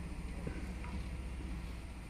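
Ford F-150's engine idling, a low steady hum heard inside the cab.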